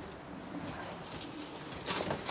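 A bird cooing faintly, with a sharp click near the end.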